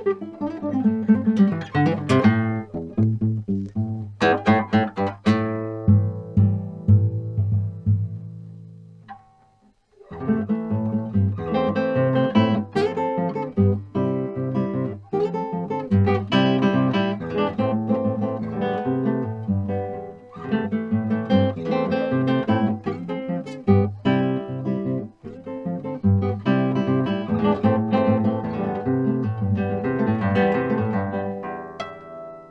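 Nylon-string classical guitar played solo, fingerpicked: ringing chords and low bass notes that die away to a brief pause about ten seconds in, then a steady flow of picked notes.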